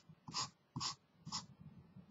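Felt-tip marker drawn across paper in short diagonal hatching strokes: three quick scratchy strokes about half a second apart, then softer, smaller marks.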